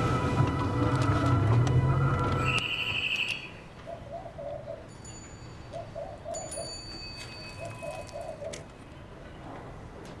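Tense background music that ends about two and a half seconds in; then a pigeon coos in three short phrases, with a few faint high bird chirps.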